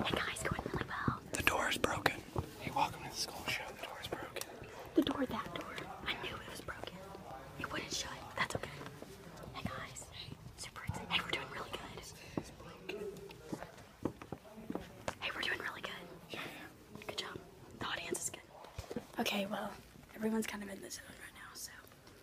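People whispering in hushed voices close to the microphone, in short irregular bursts.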